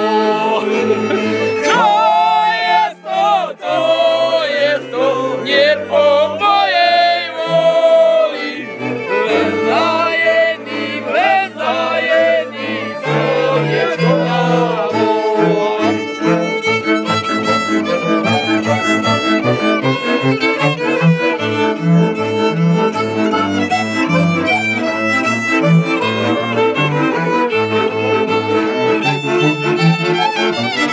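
Slovak folk string band playing live: fiddles over a bowed bass line with a diatonic button accordion (heligonka), and men singing along in the first part. From about halfway on the singing gives way to fast, busy fiddle playing.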